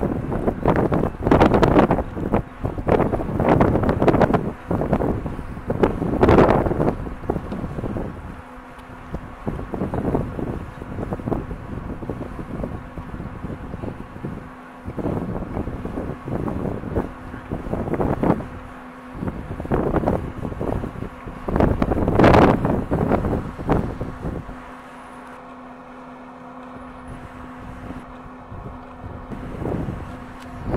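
Gusty wind buffeting the microphone in irregular loud bursts, easing off for the last few seconds. A faint steady hum runs underneath.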